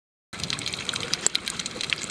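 Underwater sound from a submerged camera: water movement with dense crackling and clicking, setting in a moment in.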